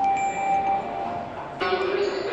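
Clear, chime-like ringing tones, one held steady for about a second, with a voice-like sound coming in near the end.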